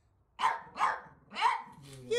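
A pug barks three short times, the barks spaced under a second apart.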